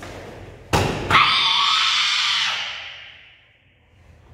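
Karate kiai during the Gankaku kata: a sharp snap about three-quarters of a second in, then a loud shout held for over a second and trailing off.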